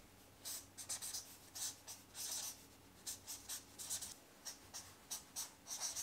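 Marker pen writing on a grid-paper flip chart: a string of short, faint strokes with brief pauses between them.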